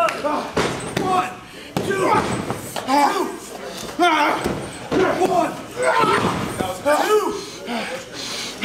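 Wrestlers' impacts on a canvas wrestling ring: sharp thuds and slaps about once a second as one wrestler strikes another down on the mat. People's voices call out throughout.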